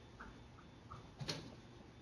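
Felt-tip marker drawing strokes on paper: a few faint short squeaks, then one louder quick stroke about a second and a quarter in.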